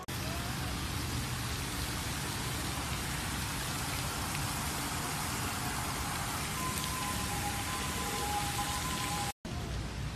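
Steady splashing, rain-like rush of water from a park fountain, with a faint thin whistle-like tone over it in the later part. The sound cuts out for a moment near the end.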